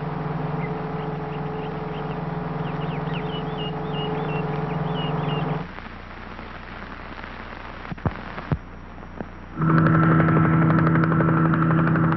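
A steady engine drone with faint warbling high tones cuts off about halfway through. A quieter stretch follows, with two sharp clicks. A louder steady engine drone starts near the end.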